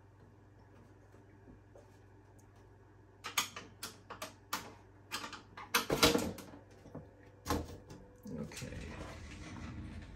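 Sheet-metal cover of an HP 3585B spectrum analyzer being worked loose and slid off the chassis. After a few quiet seconds with a low steady hum, a string of metal clicks and knocks begins, with the loudest clunks about six seconds in and another near eight seconds, followed by a scraping rustle near the end.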